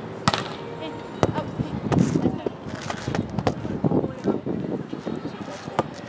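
Sharp slaps of hands striking a volleyball during a beach volleyball rally: one crisp hit about a third of a second in, two more a little after a second in, and another near the end. Indistinct voices fill the gaps between the hits.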